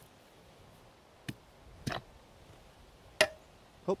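A few sharp wooden knocks about a second apart, the loudest about three seconds in, as an axe head is worked down the hickory handle onto its newly carved shoulder.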